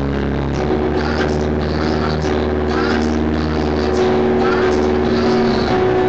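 Electronic keyboard playing sustained chords over a steady bass, with a few brief voices heard over it.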